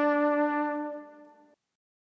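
Music ending on a single held note that fades out and stops about a second and a half in.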